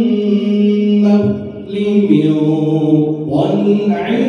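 A man chanting Quran recitation (tilawat) in the melodic tajwid style, amplified through a microphone and loudspeakers. He holds long drawn-out notes, with a short dip about a second and a half in before the chant goes on.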